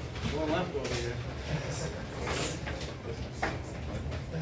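Indistinct voices talking in a bar room, with a few light knocks and a steady low hum underneath; no music is playing.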